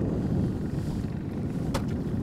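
Steady low rumble of wind buffeting the microphone, with one short click about three-quarters of the way through.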